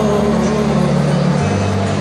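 A vocal quartet holds a low, sustained chord in harmony. The bass voice steps down to a lower note about one and a half seconds in.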